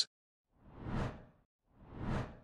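Two whoosh sound effects of an animated graphic transition, each swelling up and fading away within about a second: one near the middle, the second beginning near the end.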